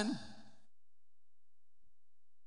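A man's voice trails off in a breathy tail at the end of a word, during the first half-second. Near silence follows: a pause in the speech.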